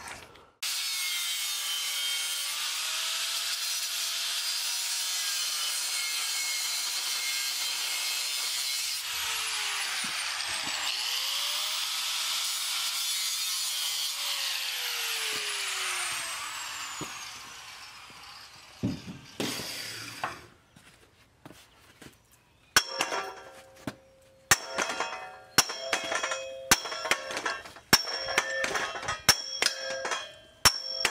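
A steady harsh hiss with shifting whines for about the first fifteen seconds, fading out by about eighteen seconds. From about twenty-three seconds, a run of some ten sharp hammer blows on the steel tubing of an engine stand, each with a short metallic ring.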